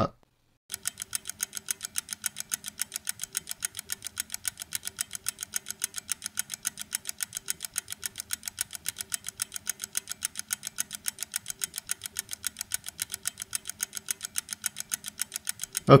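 Rapid, even ticking, about five ticks a second, with a faint steady hum beneath: a timer-style sound effect laid over a skip of several minutes of waiting. It starts after a moment of silence just under a second in.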